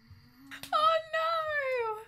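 A high-pitched female voice letting out a whiny, drawn-out wail in two parts, falling in pitch toward the end. It is an anime character's comic whimper.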